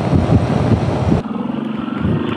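Wind rush on the microphone, then after a sudden change about a second in, a motorcycle engine's steady hum heard from on the moving bike.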